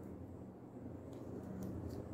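Faint, soft handling sounds of a crochet hook working thick T-shirt yarn as a stitch is made, with a couple of light ticks, over a steady low background hum.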